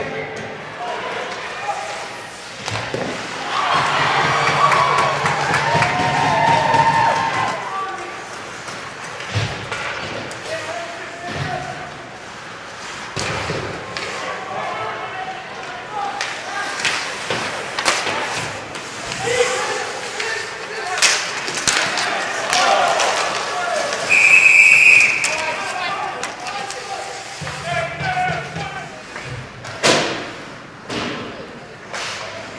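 Ice hockey game sounds in a rink: sticks and the puck clacking and banging against the boards, with people's voices shouting. Near the end comes one loud whistle blast lasting about a second.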